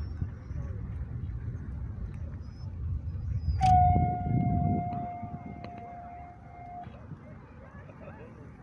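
Japanese whistling arrow (kaburaya) loosed from a bamboo longbow: a sharp snap of the release about three and a half seconds in, then one clear, steady whistle from the arrow in flight, dipping slightly in pitch over about three seconds before it cuts off suddenly.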